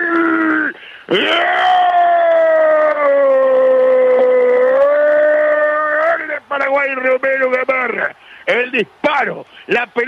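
A male radio football commentator's drawn-out goal cry, "¡Gol!", held for about five seconds with a slowly falling pitch and then breaking into rapid excited commentary.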